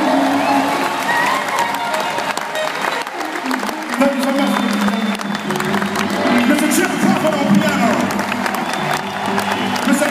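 Large arena audience applauding and cheering over a jazz band still playing, loud as it swells at the end of a song.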